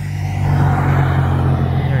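A car driving past on the road, its tyre and engine noise swelling to a peak about a second in.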